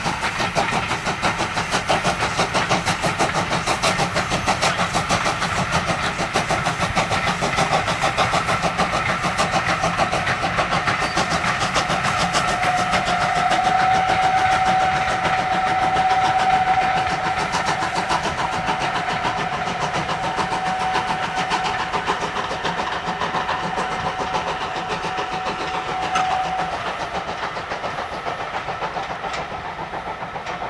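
Norwegian Railways Class 21C steam locomotive No.376 passing under steam, its exhaust beating fast and steady, then its coaches rolling by. A steady high-pitched tone holds for over ten seconds from about twelve seconds in.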